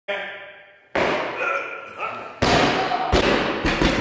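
Logo-intro sound effects: a ringing, several-pitched tone that dies away over the first second, then a burst of noise about a second in, and a louder, fuller burst with deep thuds from about two and a half seconds in.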